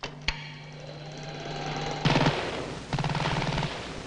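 A sharp click, then a steady low hum, then two short bursts of rapid, even rattling about a second apart.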